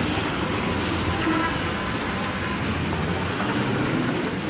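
Steady background noise with a low hum that fades out about three seconds in, and faint voices.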